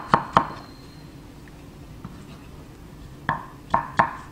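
Chef's knife slicing Korean pear on a wooden cutting board: two quick knife strikes on the board at the start, a pause of nearly three seconds, then two more strikes near the end.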